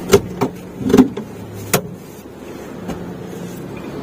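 A manual car seat slid forward on its metal rails: a few sharp clicks and knocks in the first two seconds, under a low steady hum in the cabin.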